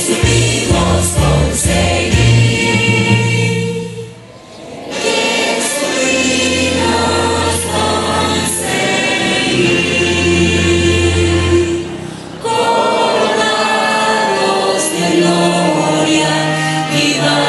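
A choir singing with instrumental accompaniment, in long held phrases over a steady bass, with short breaks between phrases about four seconds in and near twelve seconds.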